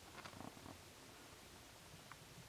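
Near silence: faint room hiss, with a few soft clicks and rustles in the first half second or so.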